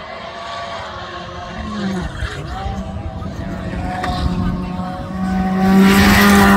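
Volkswagen Polo GTI R5 rally car's turbocharged four-cylinder engine approaching and growing steadily louder. The revs dip briefly about two seconds in, then pick up again and hold high as it nears.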